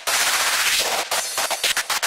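A rapid burst of machine-gun-style fire used as a sample in a break of an uptempo hardcore track. The noisy cracks come in quick irregular stutters, and the distorted kick drum drops out beneath them.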